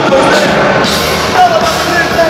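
Loud rock music with a singing voice, dense and continuous.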